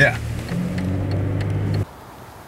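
Car engine and road noise heard inside the moving car's cabin, a steady low hum that cuts off suddenly near the end.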